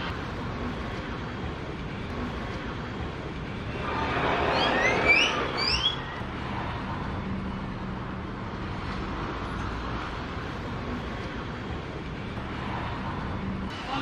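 Street traffic: a steady bed of car noise with a low engine hum, swelling louder for a couple of seconds as a vehicle passes close about four seconds in. During the swell come three or four short rising chirps.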